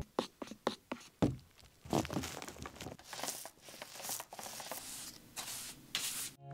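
A wooden stir stick working in an open can of paint, with a quick run of light knocks in the first second, then a paintbrush swishing in repeated scraping strokes as paint is brushed onto shiplap panels.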